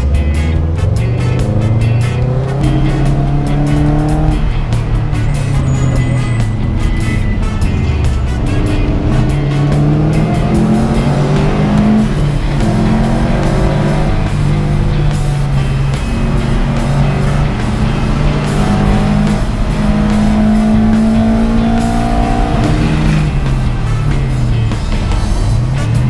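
2003 Subaru WRX's flat-four engine heard from inside the stripped race-car cabin, revving up and falling back in pitch every few seconds as it is driven hard around the track.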